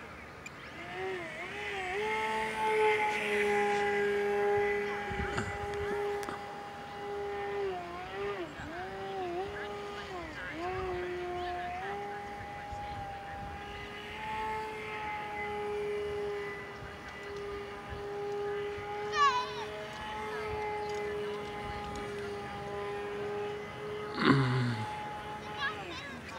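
RC aerobatic plane's motor and propeller whining at a steady, high pitch, with several quick dips and recoveries as the throttle is worked from about eight to eleven seconds in. It is at or near full throttle yet the plane barely hovers, which the pilot puts down to a propeller that is too small. A short falling whistle sounds about nineteen seconds in.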